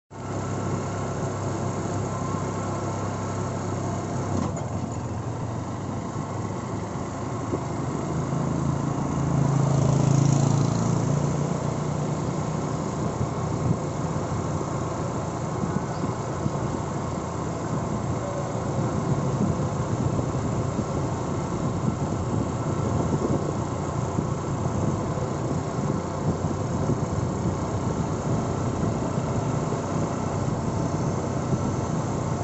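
Steady engine and road noise from a vehicle being driven slowly along a street. It swells louder for a few seconds around nine to eleven seconds in.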